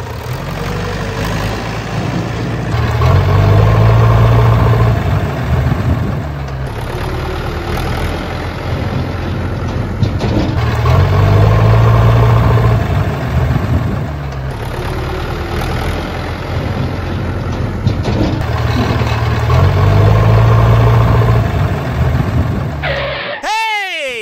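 Tractor engine running, its revs swelling and easing off three times, about every eight seconds, like a looped recording. Just before the end a quick sweeping glide in pitch cuts in.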